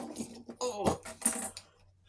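A man's short pained groans and gasps, his fingers just caught in a rat trap, with cloth rustling close to the microphone.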